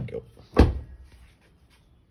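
Exterior door handle of a 5th-generation Honda City pulled and let go, knocking back into place with a sharp clack a little after half a second in, after a smaller click near the start. The door stays shut: it is locked and keyless entry has been disabled.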